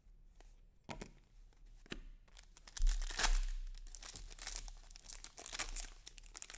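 Shiny trading-card pack wrapper being torn open and crinkled in the hands. It starts with a few light clicks, and the crackling tear sets in about three seconds in and is loudest just after that.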